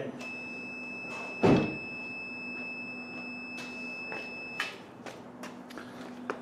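A VW Golf 1.4 TSI's electrics powering up just after the ignition is switched on: a steady hum with a thin high whine that cuts off about four and a half seconds in. A single thump comes about a second and a half in.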